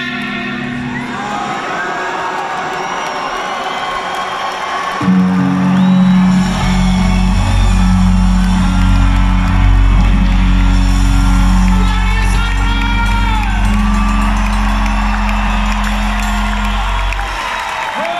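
A rock band playing live in an arena, heard from the audience: after a few seconds of lighter playing, a loud, full chord comes in and is held for about twelve seconds, with bending high notes over it, as the song ends. The crowd whoops and cheers through it.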